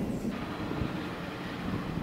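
Outdoor ambient sound from a screened video, played through the hall's speakers: an uneven low rumble of wind on the microphone with faint background noise.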